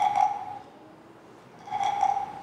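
A carved wooden frog rasp (frog guiro) is stroked along its ridged back, giving two croaks like a frog's, one at the start and one near the end.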